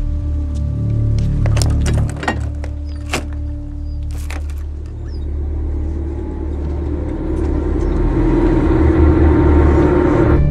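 Soundtrack of a truck scene: a steady low truck-engine rumble under a droning music score that swells louder through the second half. In the first few seconds there are several sharp knocks and clicks, fitting the cab door and the driver climbing in.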